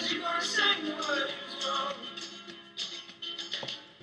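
A song with singing playing from a small Vtin Cuber Bluetooth speaker, getting quieter toward the end.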